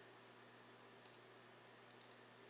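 Near silence: faint room tone with a low steady hum, and a faint computer mouse click a little past halfway through.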